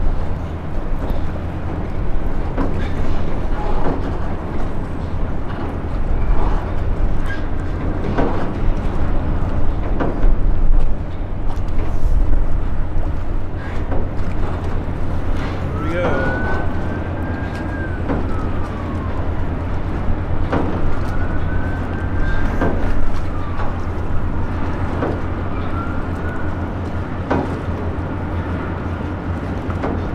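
Scattered metallic clanks and knocks from the steel of the tug-barge unit Defiance and Ashtabula as it passes. In the second half come several drawn-out squealing tones that rise and then fall in pitch. Under it all is a steady low rumble of wind on the microphone.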